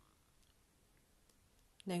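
A pause in speech: quiet room tone with a couple of faint clicks, then a voice starts speaking again near the end.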